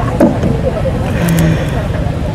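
A voice from a recorded sermon, faint and broken, over a steady low rumbling noise, with one sharp pop just after the start.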